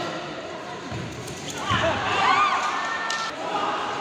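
Indoor futsal match in play: the ball thudding, with voices of spectators and players shouting. About halfway through the noise rises, with a burst of high, wavering squeals.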